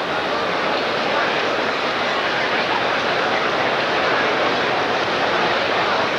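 Large stadium crowd, a steady, even hubbub with no distinct cheers or claps standing out.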